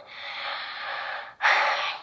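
Breath blown out through a handheld megaphone held to the mouth: a long soft hiss, then, about one and a half seconds in, a shorter and louder one.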